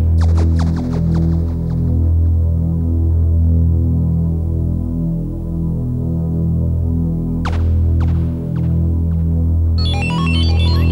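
Deep, pulsing synthesizer bass drone that swells and dips about once a second, with a few short high zaps at the start and again about seven and a half seconds in: the instrumental intro of a pop song played through a concert sound system.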